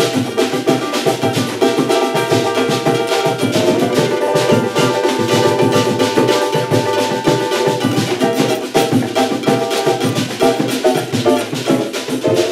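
A pagode group playing a samba rhythm live: banjo and cavaquinho strumming over pandeiro, surdo and a metal-spring reco-reco scraper, with dense, regular percussion strokes.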